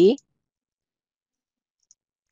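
A woman's voice finishing a word at the very start, then dead silence, broken only by one faint tiny click near the end.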